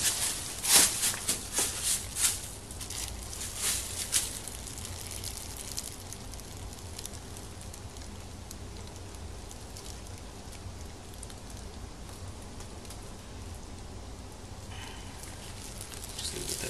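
A clear plastic bag crinkling and crackling in sharp bursts over the first four seconds as hands hold it open for the pour. After that there is only a low, steady hiss while the thick foam-in-place solution flows into the bag.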